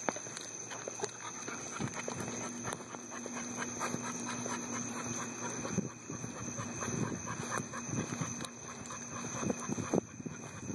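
A pit bull panting in a pet wagon stroller, with the stroller's wheels and frame rattling as it is pushed over pavement.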